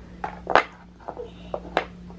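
Wooden puzzle pieces knocking and clacking against a wooden puzzle board as a toddler tries to fit a piece into its slot: several short knocks, the loudest about half a second in.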